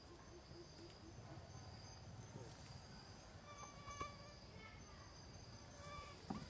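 Faint forest ambience of insects droning in a steady, high, continuous tone. About four seconds in comes a brief call with a light click.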